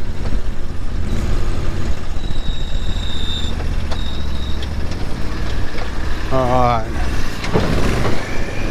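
Argo amphibious ATV's engine running with a steady low drone as the vehicle creeps down a steep sand dune. A thin high whine sounds for about a second a little after two seconds in.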